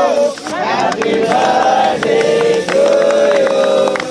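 A group of men singing and cheering together in long, drawn-out notes, with hand claps scattered through.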